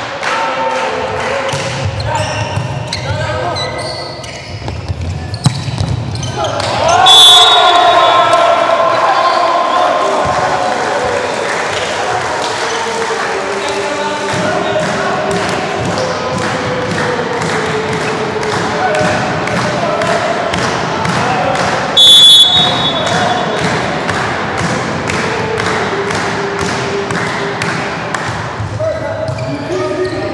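Indoor volleyball match sound: the referee's whistle blows loudly about seven seconds in and briefly again about 22 seconds in. Between the whistles, players shout, and a fast, steady rhythmic beat of clicks runs on underneath.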